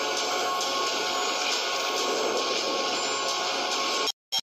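A steady, even rushing noise with a few faint held tones beneath it, unchanging throughout.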